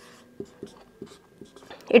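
Marker pen on a whiteboard: several short, faint strokes as a small circle and arrow are drawn.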